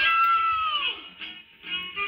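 Short musical jingle from a TV's sound, carrying a high, voice-like held note that slides down and fades out about a second in. After a brief quieter gap, the next phrase starts near the end.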